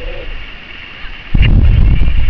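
Wind buffeting the camera microphone with faint distant shouts from the pitch. The buffeting dies down briefly, then comes back suddenly and loud about a second and a half in.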